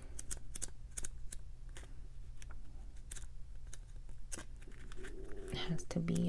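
Pages of a small paper guidebook being leafed through by hand: a scatter of light, sharp paper ticks and rustles as the leaves are turned.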